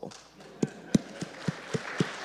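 Audience starting to applaud: a few scattered single claps from about half a second in, thickening into applause near the end.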